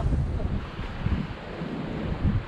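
Wind buffeting the microphone in irregular low gusts, over a steady hiss of ocean surf.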